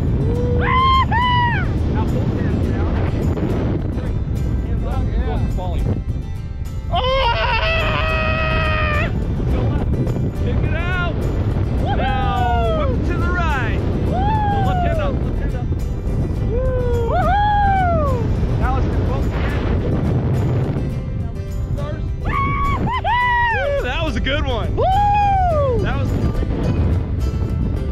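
Wind rushing over the microphone under an open parachute, with background music and several rising-and-falling whoops of excitement.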